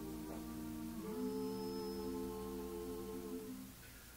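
An a cappella vocal group humming sustained chords in close harmony, the chord shifting to a new one about a second in and fading out shortly before the end.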